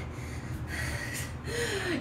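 A woman's audible breath, a sharp intake or push of air lasting about a second, then a brief hummed vocal sound near the end.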